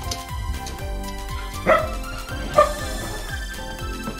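Two barks from a Shetland sheepdog, just under a second apart, over background music with a steady beat.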